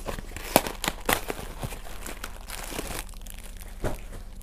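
Packaging being handled: a Twinkies cardboard box is torn open and a plastic-wrapped Twinkie is pulled out, with rapid crinkling and sharp crackles. The rustling eases off about three seconds in.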